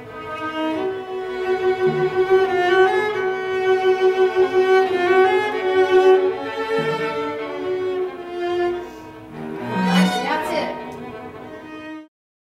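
String quartet (violins, viola and cello) playing a passage together: a long held bowed note in the middle voices with moving lines above it, and a fast upward flurry near the end.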